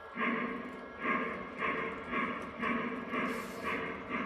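Model steam locomotive's onboard sound system chuffing steadily, about two chuffs a second, as the O-gauge Pennsylvania K4 runs around the layout.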